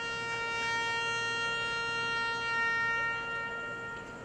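Solo trumpet holding one long, steady note that stops right at the end.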